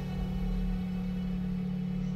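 A held low synth bass note with faint higher overtones, slowly fading, as the music winds down.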